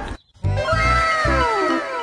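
Comedy background music cue: starting about half a second in, a sliding effect with several tones falling together in pitch over about a second and a half, over a bass line of short repeated notes.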